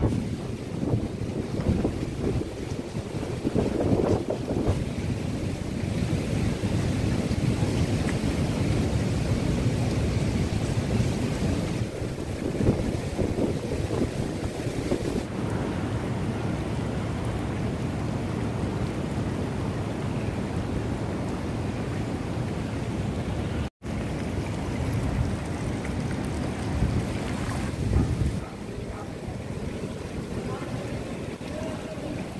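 Wind rumbling on the microphone over the wash of seawater flooding the ground in a sea surge, a steady noise with no tune or voice. The sound cuts out for an instant about three-quarters of the way through.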